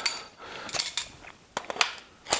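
Sharp metal-on-metal clicks and clinks of an AR-15 pistol's quick-release barrel assembly being fitted onto the upper receiver, about four clicks in the second half.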